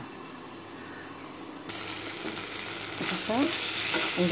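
Spiced cauliflower frying in a pan, sizzling, with a spatula stirring through it. The sizzle is faint at first, jumps up abruptly about halfway through, and grows louder near the end.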